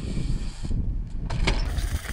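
Mountain bike rolling over loose gravel, with a low rumble of wind on the microphone and a couple of short sharp knocks from the bike about one and a half seconds in.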